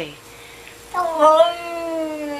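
A cat's long, drawn-out yowl, starting about a second in, dipping slightly at first and then held at a steady pitch.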